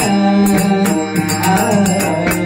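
A man singing a Marathi devotional bhajan into a microphone, with quick tabla and pakhawaj strokes and a steady held drone underneath.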